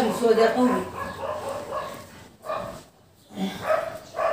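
A person's voice speaking in short phrases, trailing off into a brief pause about three seconds in.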